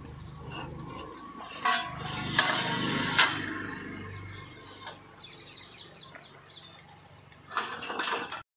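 A steady low hum with three sharp knocks about one and a half, two and a half, and three seconds in, and faint high chirping later on.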